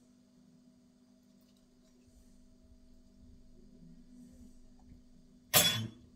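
Quiet kitchen for several seconds, then about five and a half seconds in a single sharp, loud clink of a utensil knocking against a glass pesto jar.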